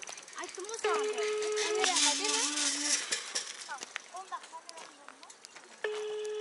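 Telephone ringback tone playing from a smartphone's loudspeaker: one steady beep about a second long, then a pause of about four seconds, and the next beep starts near the end. The call is ringing and not yet answered.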